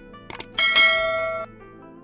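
Subscribe-button sound effect: a quick double mouse click about a third of a second in, then a bright bell ding that rings for about a second and cuts off suddenly.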